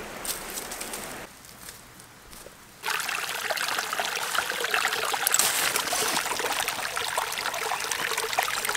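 Shallow stream water trickling over rocks. It starts abruptly about three seconds in, after a quieter stretch.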